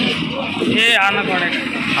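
Speech: one short spoken word over the continuous background noise of a busy outdoor market yard.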